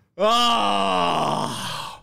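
A person's long, loud groan, held for nearly two seconds and sliding down in pitch: an overwhelmed reaction.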